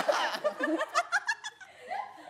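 Laughter: a run of short laughing breaths that trails off about a second and a half in.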